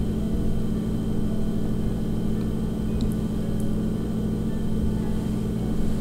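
A steady low-pitched hum, even and unchanging, with a couple of faint ticks about halfway through.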